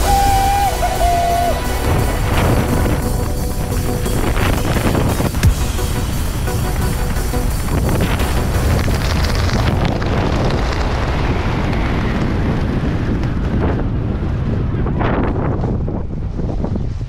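Background music over wind rushing across a camera microphone during a parachute descent; the hiss thins about ten seconds in.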